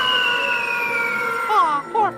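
A long, high-pitched cry from a film soundtrack, sliding slowly down in pitch. A cartoon voice starts near the end.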